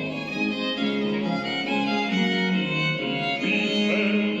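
Instrumental passage between sung phrases: a violin playing a melody of held notes over string accompaniment.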